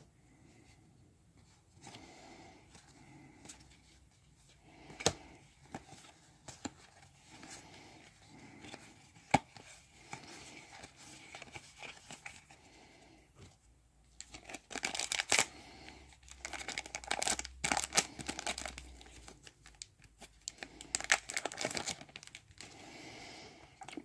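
Playing cards handled and set down on a table with a few light taps, then, past the halfway mark, a foil booster-pack wrapper torn open and crinkled in several bursts.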